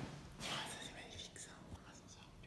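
A person whispering close to the microphone in short, breathy bursts.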